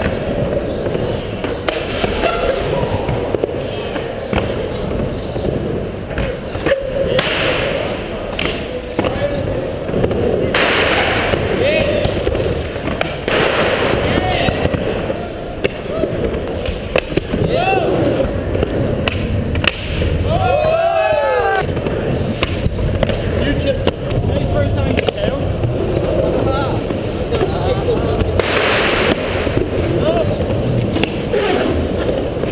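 Skateboard wheels rolling across a concrete mini ramp, with several louder passes and board clacks, over a steady murmur of people talking.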